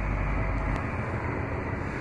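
Steady outdoor rumble and hiss of wind buffeting the microphone. The deep low rumble eases off about a second in.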